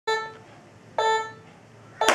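Electronic metronome beeping twice, about a second apart, keeping a steady beat; each beep is a pitched tone that fades quickly.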